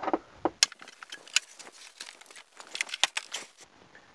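Plastic air box being pulled off the top of a VW Polo 1.2 engine: a run of irregular sharp clicks, knocks and rattles of hard plastic as it comes free of its mounts.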